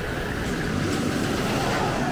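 Xcelerator, a hydraulic-launch steel roller coaster, launching its train: a steady rushing noise that grows slightly louder, with a faint whine falling in pitch.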